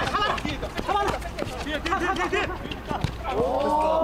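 Men's voices calling and talking over one another in short bursts, with scattered light knocks.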